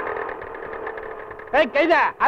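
Film soundtrack: a steady, held drone, likely the tail of a music cue, fading down. A loud voice breaks in about one and a half seconds in.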